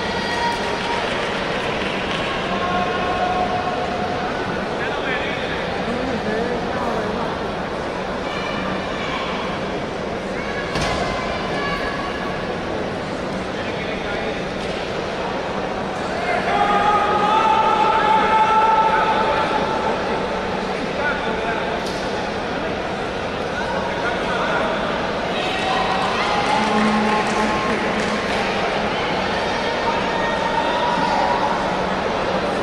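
Spectators in an indoor sports arena: a steady murmur of many voices with scattered calls and shouts, swelling louder for a few seconds just past the middle. A single sharp knock stands out about a third of the way in.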